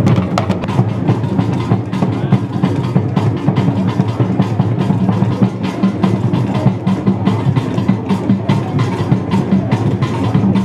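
Loud music led by busy drumming, with many quick drum strokes over a steady low pulse.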